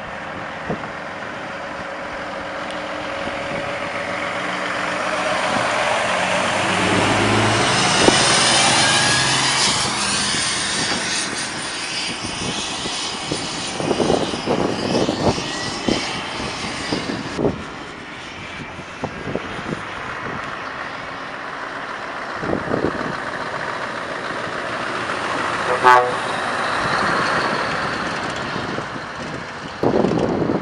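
Heavy diesel truck tractors driving away one after another. One truck's engine sound builds up as it accelerates past, loudest about eight seconds in, followed by engine and road noise with scattered knocks. Another truck's sound builds up again near the end.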